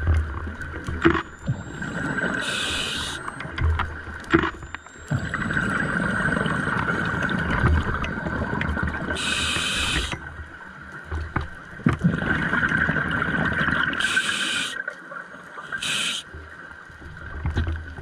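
A scuba diver breathing through a regulator underwater: short hissing inhalations alternate with longer bubbling exhalations, a few breath cycles in all.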